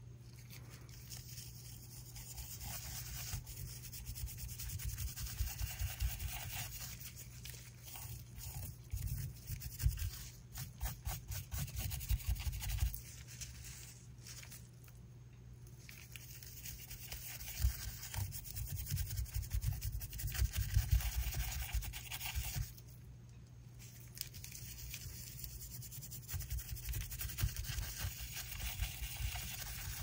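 Small brush scrubbing blue mica powder into the bubble-textured surface of a cured resin coaster, with quick rubbing strokes in spells broken by two short pauses.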